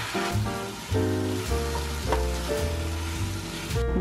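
Vegetables (zucchini, bell pepper and spinach) sizzling in a frying pan as they are stirred, with the sizzle cutting off just before the end. Background music plays throughout.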